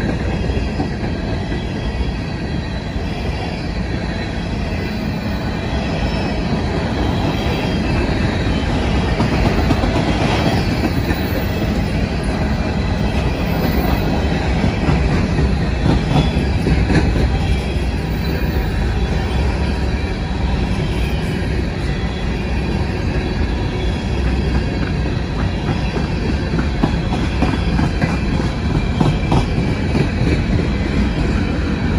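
Empty coal hopper cars of a freight train rolling steadily past close by. Wheels run on the rail with a continuous rumble and rapid repeated clicking as the trucks pass over rail joints.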